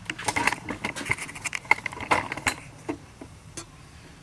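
Handling noise: a quick run of small clicks and light rattles, thinning out to a few scattered clicks after about two and a half seconds.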